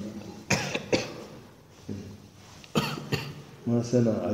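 A man coughing: two short coughs about half a second apart about a second in, then two more near three seconds.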